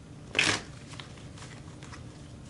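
A short rustle of tarot cards being handled, about half a second in, followed by a faint click.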